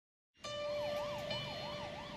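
Emergency vehicle siren wailing rapidly up and down, about three sweeps a second, over a steady tone; it starts abruptly about half a second in, after silence.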